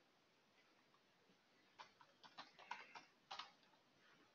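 Faint computer keyboard keystrokes over near silence: a short run of about seven key clicks, starting nearly two seconds in, as a line of code is typed.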